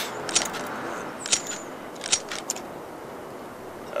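A handful of sharp metallic clicks from a submachine gun being handled and its trigger pulled with the safety on: the gun does not fire. The clicks sit over a steady background hum.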